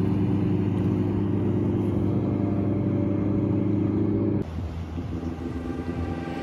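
A motorboat engine running at a steady, unchanging pitch, cutting off abruptly about four and a half seconds in.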